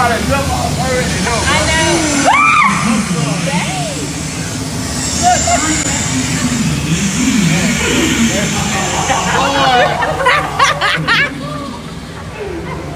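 Several people's voices talking and exclaiming over a loud, steady rushing background noise, with a burst of high laughing near the end.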